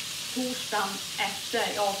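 Ground-meat patties sizzling in a frying pan, a steady hiss throughout.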